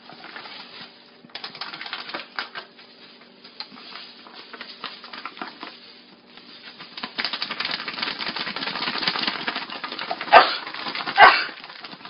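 Cornmeal bag and plastic food storage bag crinkling and rustling as cornmeal is poured from one into the other. The rustling thickens about seven seconds in, and two sharp, louder crackles come near the end.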